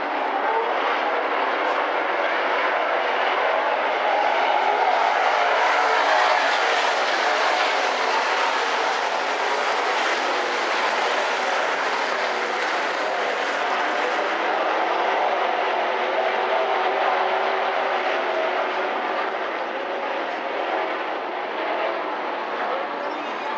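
A pack of dirt-track modified race cars running hard together, their V8 engines blending into a dense, steady drone. It swells louder through the middle as the pack comes closer, then eases back.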